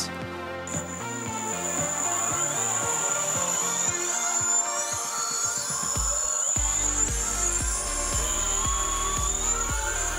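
Electric motor spinning up a prototype wheel of arc magnets on a test rig: a high whine that starts under a second in, with tones climbing in pitch through the middle as the wheel gains speed. Background music with a beat plays underneath.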